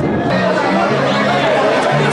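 Indistinct chatter and shouting of players and spectators, with music playing underneath, its low bass notes stepping between two pitches.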